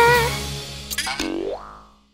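A held, sung "taraaa" note trailing off over soft background music. About a second in comes a quick rising, boing-like cartoon sound effect.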